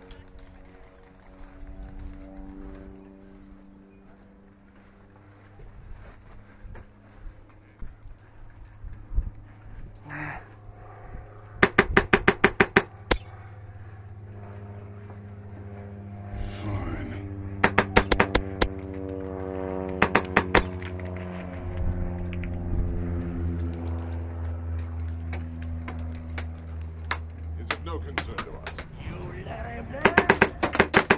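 Airsoft gun firing several short bursts of rapid, evenly spaced shots, about seven or eight a second. A background music track of long held notes plays underneath.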